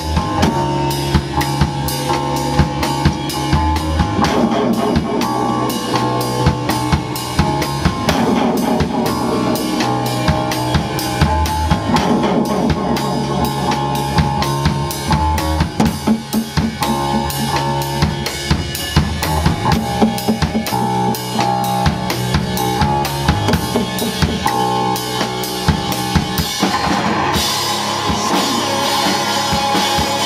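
Live punk rock band playing an instrumental stretch, led by a steady, hard-hit drum-kit beat of bass drum and snare with guitar lines underneath. About three seconds before the end the sound grows brighter and fuller as the cymbals and guitar open up.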